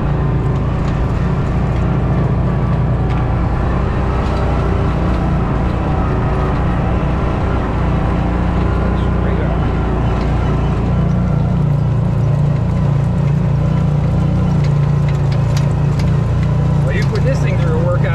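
Engine of a side-by-side utility vehicle running steadily under load as it climbs a steep dirt track, heard from inside the open cab.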